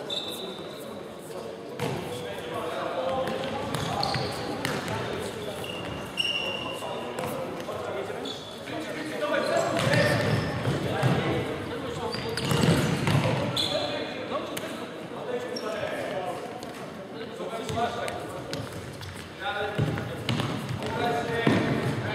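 Indoor futsal game: players' shouts and kicks of the ball echo around a large sports hall, with a few short squeaks of shoes on the wooden floor.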